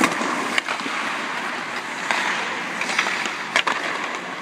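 Ice hockey skates scraping and carving across the ice, with a few sharp clacks of sticks and pucks, two of them close together near the end, in a large empty arena.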